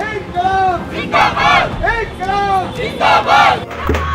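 Protest slogans shouted call-and-response: one man shouts a line and a group of workers shouts back in unison, three exchanges at an even pace. Near the end the sound changes to a different, busier crowd.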